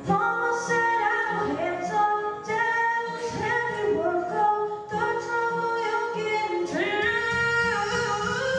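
A girl singing a song into a microphone, holding and gliding between sustained notes, with instrumental accompaniment underneath.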